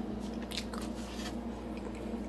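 Person chewing a cookie, a few short soft crunches, over a steady low hum.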